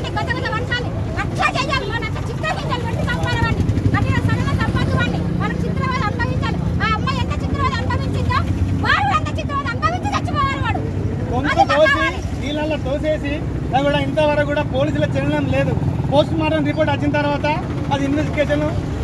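Protesters shouting slogans, one voice leading and others joining in, over a steady low rumble.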